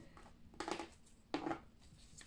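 A deck of tarot cards being handled, with two faint, brief card sounds about half a second and a second and a half in.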